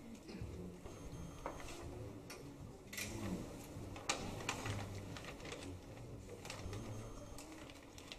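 Quiet room sound with scattered light clicks and taps and a faint low murmur underneath.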